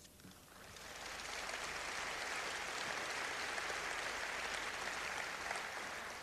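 A large audience applauding in a big hall, building up about half a second in and then holding steady.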